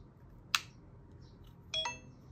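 A DJI Osmo Pocket 3's screen is rotated and clicks into place about half a second in. Near the end the camera plays a short electronic start-up chime as it powers on.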